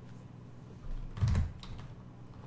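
A few computer keyboard keystrokes in a quick cluster about a second in, the loudest with a dull thud.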